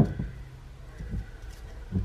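Quiet handling of a motorcycle's four-carburettor bank on a wooden bench: a few faint knocks and clicks over a low steady hum.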